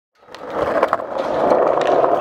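Skateboard wheels rolling on concrete, fading in over the first half second, with a few short sharp clicks on top.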